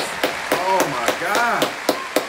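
Hands clapping at an even pace, about three sharp claps a second, over a man speaking Russian.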